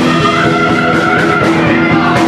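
Live blues-rock band playing: an electric guitar holds one long, slightly rising bent note over bass and drums.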